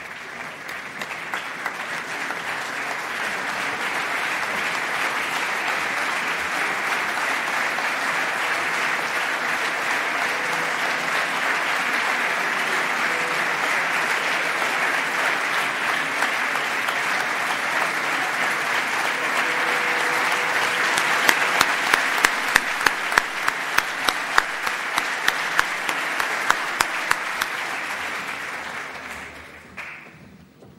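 Audience applause in a large hall, swelling over the first few seconds and holding steady. In the last third, loud single claps stand out at about two a second before the clapping dies away near the end.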